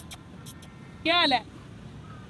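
A short voiced sound from a person, about a second in, over a low steady outdoor background noise, with a couple of faint clicks near the start.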